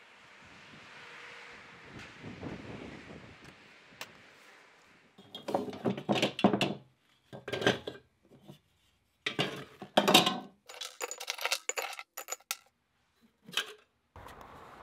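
Pieces of scrap copper and sterling silver dropped one after another into crucibles: a string of metallic clinks and knocks, starting about five seconds in, after a few seconds of faint hiss.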